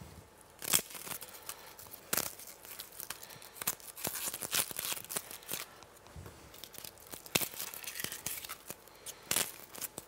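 Shallots being peeled by hand with a small knife: the papery skins tear and crackle with scattered soft clicks.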